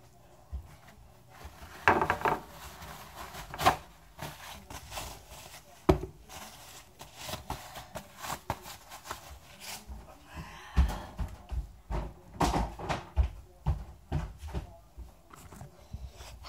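Paper towel crumpling and rustling as wet hands are dried, among scattered knocks and bumps close by.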